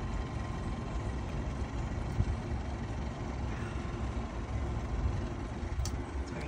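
Steady low rumble, like an engine running at idle, with a faint steady tone above it.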